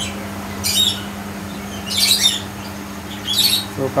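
A bird giving short, high chirping calls about every second and a half, three times, over a steady low hum.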